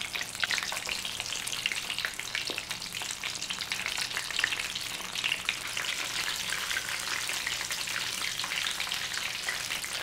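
Rice-ball arancini deep-frying in hot oil in a wok, a steady crackling sizzle.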